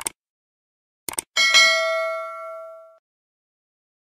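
Subscribe-button sound effect: a short click, a quick double click about a second later, then a notification-bell ding that rings out and fades over about a second and a half.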